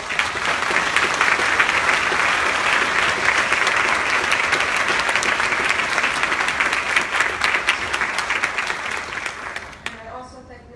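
Audience applauding: a steady, loud wash of many hands clapping that starts all at once and dies away near the end.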